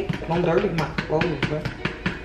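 A woman's voice murmuring without clear words, over a run of light clicks of a metal spoon stirring batter in a plastic bowl.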